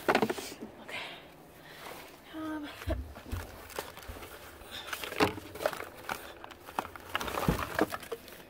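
Cosmetics and their plastic wrapping being handled and set into a cardboard box: rustling and crinkling with scattered irregular knocks, and a brief voice partway through.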